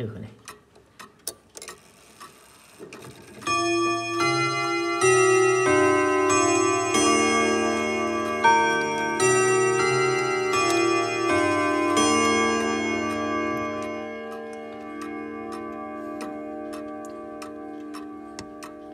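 Junghans ten-rod chiming wall clock: the movement ticks, then about three and a half seconds in the hammers strike the long chime rods in a slow melody. The notes stop about twelve seconds in and the rods keep ringing, fading slowly with a long sustain.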